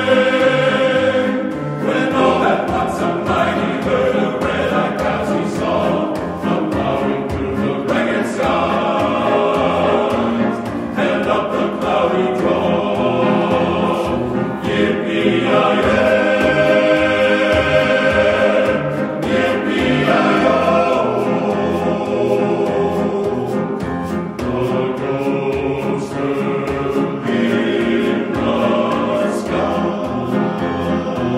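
Men's chamber choir singing a cowboy ballad in full harmony, with a steady rhythmic accompaniment of piano and percussion underneath.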